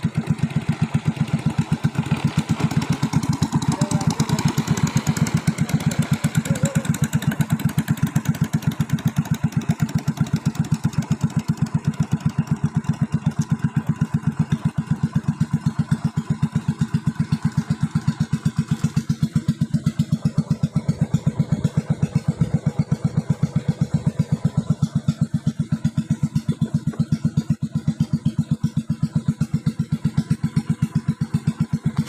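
Engine of a wooden longboat running steadily under way, a fast, even putter with no change in speed.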